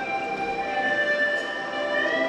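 Ensemble of hulusi (Chinese gourd flutes) playing a slow melody in long held notes, several pipes sounding together; the tune steps down to a lower held note about half a second in.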